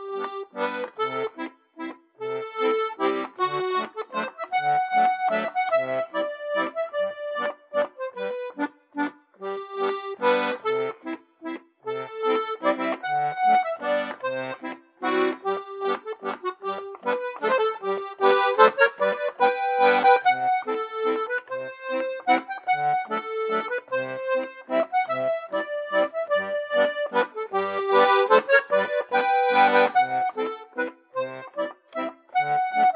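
D/G two-row button melodeon playing a waltz at a steady tempo: a melody on the treble reeds over short, regular bass notes and chords in an even three-time pattern.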